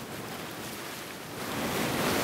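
Wind and sea noise on deck: a steady rushing of waves and wind that grows louder about one and a half seconds in.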